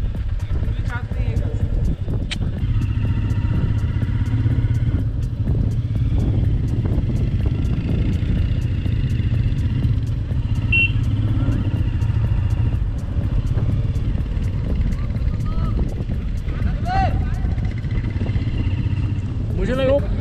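Motorcycle engine running as the bike rides along, with heavy wind rumble on the microphone throughout.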